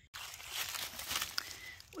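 Footsteps crunching through dry fallen leaves: an uneven rustling and crackling.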